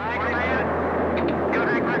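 Rocket launch roar: a steady rushing rumble that opens with a brief rising sweep.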